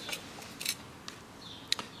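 Faint handling noise from a clipboard and its paper sheets as it is turned over: a couple of short rustles and a sharp click near the end.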